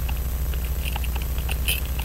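Steel tweezers tapping and scraping on the parts of a Waltham Model 1892 pocket watch movement while prying at a small cover: light, irregular metal clicks, a little louder near the end. A steady low hum runs underneath.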